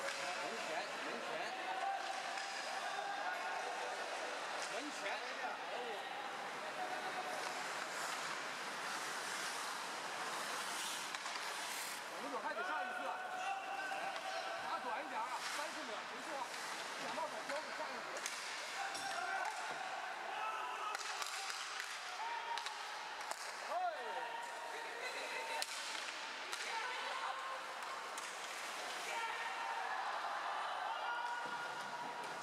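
Live ice hockey game sound: indistinct spectator voices throughout, with scattered sharp knocks of sticks and puck on the ice and boards.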